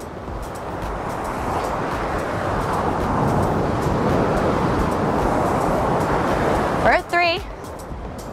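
Ocean surf breaking over shoreline rocks and washing up the sand: a rush of noise that swells to its loudest midway, then eases off.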